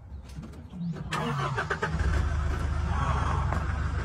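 A vehicle engine comes in suddenly about a second in and runs on loudly, with a low rumble from about two seconds in.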